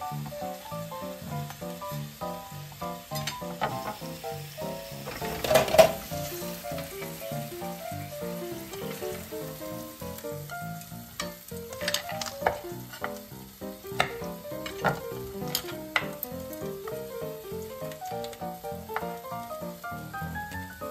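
Pork-wrapped asparagus sizzling as it fries in a lidded grill pan, with sharp clicks of knife and chopsticks and one louder clatter about six seconds in. Light background music with a stepping melody plays throughout.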